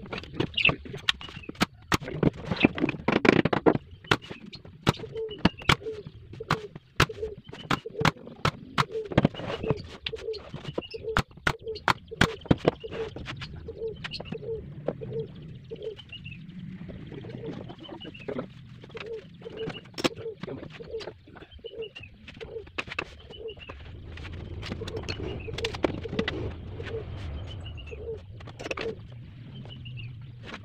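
Sharp clicks and knocks at irregular intervals, densest in the first half, from tool work on a plywood box. Under them, a bird calls steadily, about two short calls a second.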